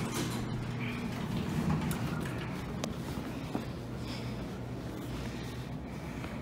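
Elevator car stopping and its doors sliding open, over a steady low hum, with a sharp click about three seconds in.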